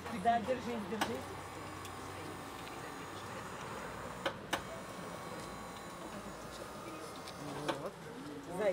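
Electric wheelchair platform lift on a van running with a steady hum as it raises a wheelchair, with sharp clicks about one second and about four seconds in.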